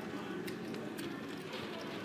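Murmur of voices at a roulette table, with a few sharp clicks of plastic gaming chips being set down on the betting layout.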